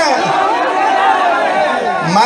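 Speech: a man talking loudly into a microphone, with drawn-out, held syllables.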